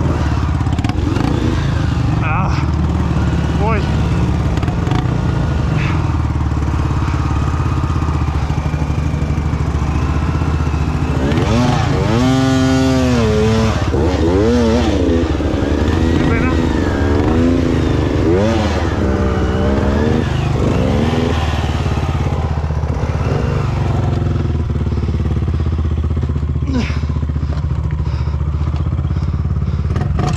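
Dirt-bike engines idling and running at low revs in a slow, tight crawl: the Beta 200RR's two-stroke engine and a Honda trail bike just ahead. A steady low rumble, with the pitch rising and falling through the middle stretch.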